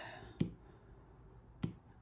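Two sharp taps of an Apple Pencil's plastic tip on an iPad's glass screen, about a second and a quarter apart.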